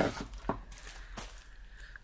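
Quiet handling of paper: a couple of light taps and soft rustles as a cellophane-wrapped pad of patterned paper is picked up from the desk.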